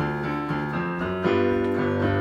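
Yamaha electronic keyboard playing a disco-style groove: chords changing every half second or so over a stepping bass line.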